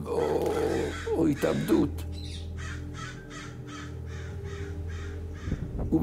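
Crows cawing, first a few drawn-out calls, then a quick run of short caws about three a second, over a low sustained musical drone.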